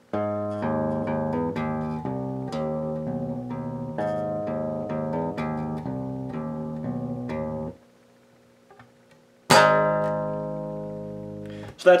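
Electric bass (an Ibanez Mikro with an active EMG pickup, through an Ampeg cabinet, nearly clean with no effects) playing a quick run of fingered notes for about eight seconds. After a short pause, one strummed chord is left to ring out and fade.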